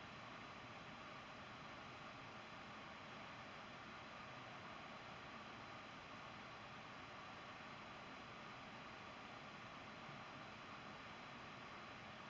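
Near silence: steady room tone with faint hiss.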